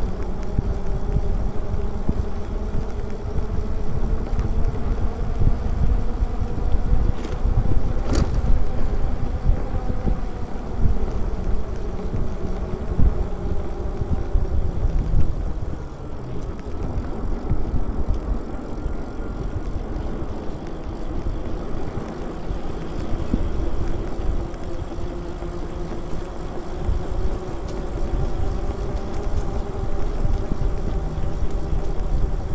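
Wind buffeting the microphone and the road rumble of an e-bike in motion, with a faint steady hum from its motor. A single sharp click about eight seconds in.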